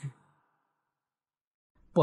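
Near silence: a pause in a man's speech, where the sound drops to dead silence for about a second and a half, with the tail of one word at the very start and the next word beginning at the very end.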